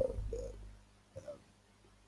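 A man's speaking voice trailing off at the end of a phrase, then a pause with only a faint, short sound about a second in.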